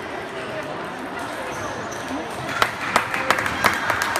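Murmur of voices echoing in a sports hall, then from a little past halfway a quick series of sharp clicks, about three a second: a table tennis ball striking table and bats in a rally.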